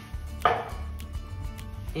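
A single sharp knock about half a second in, a kitchen utensil striking a stainless steel sauté pan as stock is stirred into rice, over soft background music.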